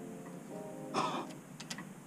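A man's sharp gasp about a second in, followed by a few faint light clicks, over a faint steady tone.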